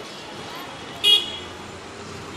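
A single short, high-pitched vehicle horn toot about a second in, over steady street noise.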